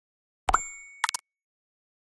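Cartoon sound effects for an animated logo: a pop with a short ringing ding fading out about half a second in, then three quick clicks just after a second.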